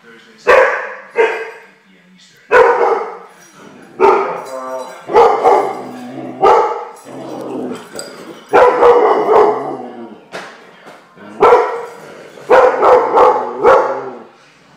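A large dog barking loudly and repeatedly, about ten barks in irregular bursts, some of them drawn out longer.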